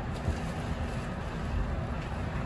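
Steady low rumble and hum heard from the front cab of a Kintetsu electric train at the platform.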